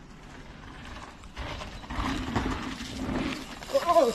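A mountain bike's rear freehub ratchet buzzing as the rider coasts in, with tyre noise on the dirt trail. It grows louder from about a second and a half in as the bike comes close.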